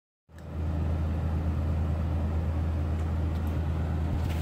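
A steady low hum with an even background noise over it, starting a moment in and holding level throughout.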